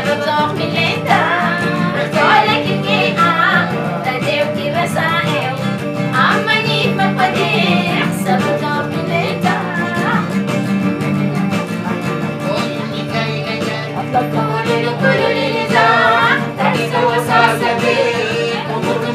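A woman singing a Harari song, accompanied by acoustic guitar over sustained low notes.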